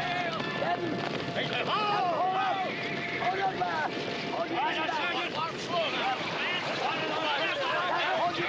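Several men shouting and whooping at once, overlapping, over the noise of a troop of horses galloping in.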